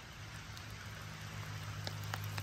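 Light rain falling, a steady soft hiss of drops, with a low steady hum underneath and a single sharp tick near the end.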